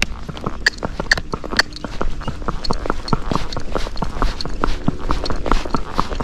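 A Missouri Fox Trotter's hooves clopping on a paved road in a steady run of sharp hoofbeats.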